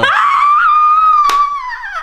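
A woman's high-pitched squealing laugh, held on one note for nearly two seconds and dropping in pitch as it fades near the end. There is a single sharp click about halfway through.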